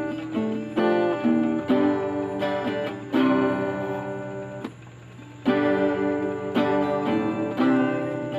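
Acoustic guitar strummed, with a new chord struck about once a second and a short break about five seconds in.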